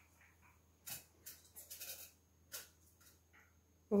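Water poured from a plastic jug splashing onto a foil-wrapped object and the tray beneath, heard as a few faint short splashes spread over a couple of seconds.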